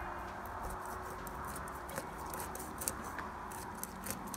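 Scattered faint, sharp, wet clicks and crackles of hands pulling and working at the skin and flesh of a plucked rooster carcass, beginning about a second and a half in, over a steady low background noise.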